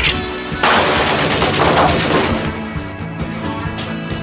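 A long burst of automatic rifle fire, the rapid shots running from about half a second in to just past two seconds, over dramatic film score music that carries on after the shooting stops.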